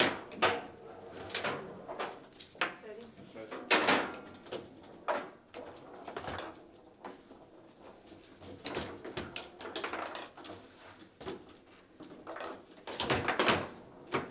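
Table football play: the ball knocked about by the plastic figures and the rods slid and banged in their bearings, giving irregular sharp clacks and thuds, with a dense flurry of hits near the end. A goal is scored during the play.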